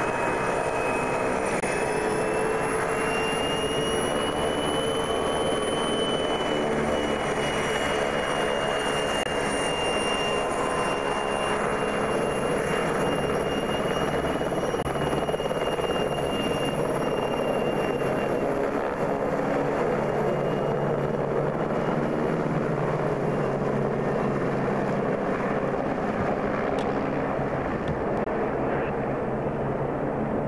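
Helicopter running with its rotor turning, then lifting off and flying away: a steady rotor and engine noise with a high whine that rises a little in the first few seconds and fades out over the last third as the helicopter departs.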